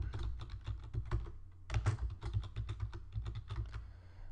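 Typing on a computer keyboard: a run of quick keystrokes with a brief pause about a second and a half in, over a steady low hum.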